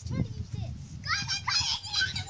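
Children shouting and squealing in high voices while playing, starting about a second in, over a low rumble.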